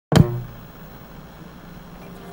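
A single sharp percussive hit from an intro theme a fraction of a second in, ringing out briefly, followed by a quieter low hum.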